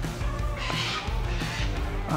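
Background rock music with a steady bass line.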